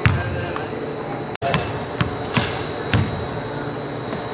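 A basketball bouncing on a hardwood gym floor, about five bounces with the first the loudest, over a steady high-pitched whine.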